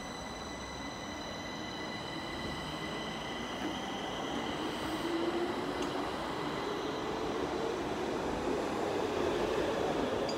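Stockholm metro C20 train departing: a steady high whine from the train fades away over the first several seconds, while a rumble of wheels on rails slowly grows louder.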